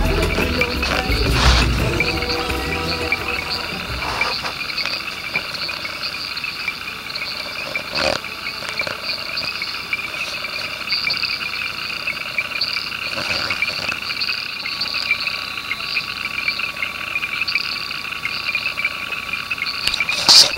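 A dense, steady chorus of frogs with insects trilling, many callers overlapping in high bands, with a few sharp clicks scattered through it. Music fades out in the first few seconds.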